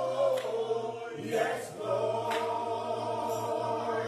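Men singing a slow gospel worship song together, a lead voice with a small group of backing singers, in long held notes with a brief breath about a second in.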